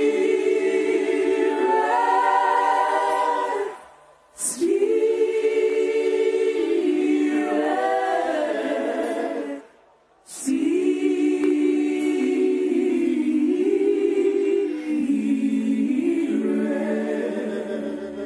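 A choir singing a worship song unaccompanied, in long held phrases broken by brief silences about four and ten seconds in.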